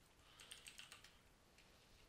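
Faint computer keyboard typing: a short run of keystrokes about half a second to a second in.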